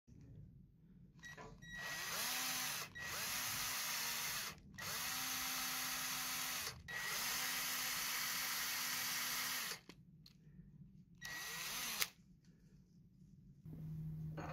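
Cordless drill (AEG BS 12 C) spinning a pen mill that trims the ends of a burl-and-resin pen blank, run in several bursts of a couple of seconds each. The motor whine rises as it spins up at the start of each burst, and there is a sharp click near the end.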